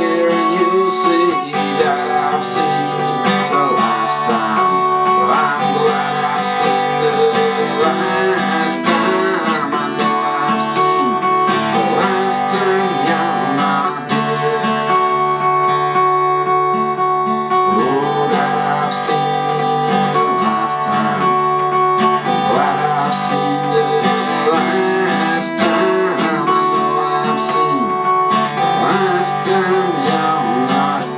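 Steel-string acoustic guitar played in a steady instrumental passage, strummed chords with notes left ringing.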